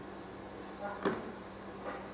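Beer running from a chrome dispensing tap into a plastic cup over a steady low hum, with a short knock about a second in and a fainter one near the end.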